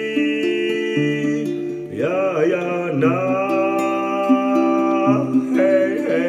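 A man singing a chant-like melody in long held notes, each lasting two to three seconds, to his own acoustic guitar accompaniment.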